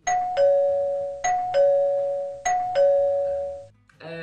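Two-tone ding-dong doorbell chime rung three times in quick succession, each a higher note followed by a lower one that rings on.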